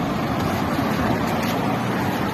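Steady road traffic noise from cars and pickups moving through a city street, an even rumble with no single event standing out.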